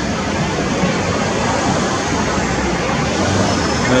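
Steady rushing noise of passing street traffic, with no distinct events.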